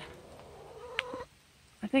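A faint drawn-out animal call, rising slightly and lasting about a second, with a sharp click about a second in.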